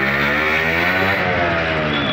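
Motorcycle engine running steadily with a slight drift in pitch, over a haze of wind and road noise.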